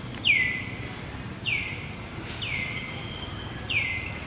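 A bird calling: a clear whistle that slides down in pitch and then holds briefly, given four times about a second apart.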